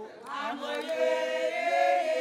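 Several women singing together, their voices swelling in about half a second in and then holding a long, steady note.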